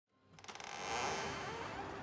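A front door being opened: a few quick clicks of the latch, then a steady metallic jingling shimmer.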